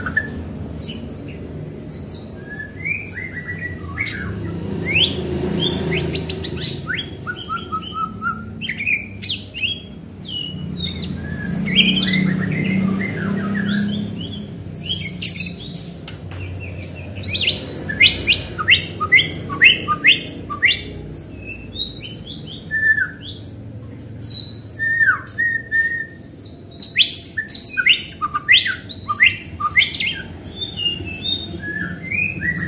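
White-rumped shama singing a long, varied song of whistles, sweeping notes and sharp chips, the notes coming in quicker, denser runs in the second half.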